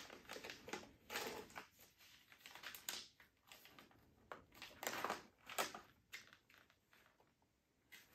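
A foil-lined plastic coffee bag crinkling and rustling in faint, irregular bursts as it is torn open and handled.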